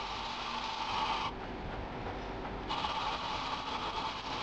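Hand file stroked across a steel knife blade held in a vise, shaping it. One long filing stroke ends a little over a second in, and the next begins near three seconds, with a quieter gap between them.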